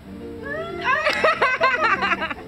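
A woman's high-pitched squeal that turns into rapid bursts of laughter, about six a second, over background music.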